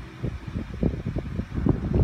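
Muffled, indistinct voices over a steady low hum.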